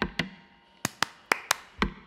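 Acoustic guitar played percussively in a quick rhythm: sharp muted strums and taps, with a little ringing of the strings under them. There is a short lull about half a second in, then a few louder hits.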